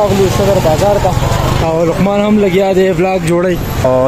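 A man talking, his words unclear, over steady noise from a busy street with passing traffic.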